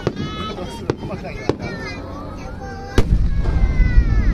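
Aerial firework shells bursting: a few sharp cracks in the first second and a half, then a much louder boom about three seconds in, followed by a deep rumble.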